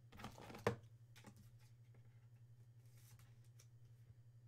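A trading card being slid into a clear rigid plastic holder: a brief rustle of plastic ending in a sharp click about half a second in, then a few faint handling clicks, over a steady low electrical hum.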